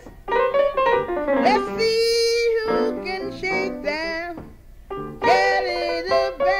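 Jug band blues recording from 1967 with piano and a pitched lead line that holds one long wavering note about two seconds in.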